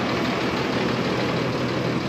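Shuttle bus engine idling steadily with a low hum.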